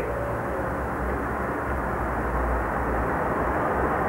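Steady background rumble and hiss, with no distinct event.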